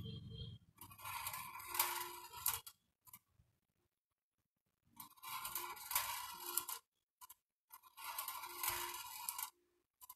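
Small balls rolling and rattling along the bent-wire track of a homemade marble-run machine, in three bursts of about two seconds each with quiet gaps between.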